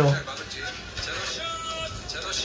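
Background music and speech from a TV variety show's soundtrack playing at a moderate level, with steady held notes in the second half; a man's voice trails off at the very start.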